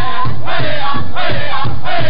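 Powwow drum group: several men striking one large shared drum in a fast, steady beat, about five strokes a second, and singing together in high voices, a women's fancy shawl dance song.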